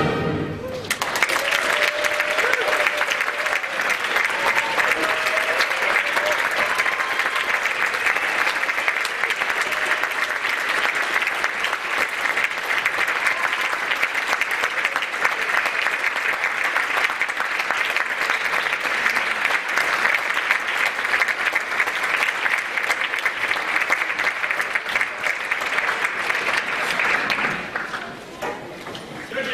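Audience applauding, with a few shouts, after the concert band's final chord ends in the first second. The applause runs steadily and dies down just before the end.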